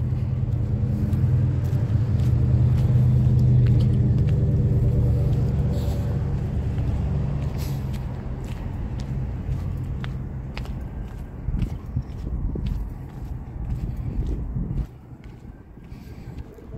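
A motor vehicle's engine running close by, with a low, steady pitched rumble, loudest a few seconds in and then slowly fading. It drops away suddenly near the end.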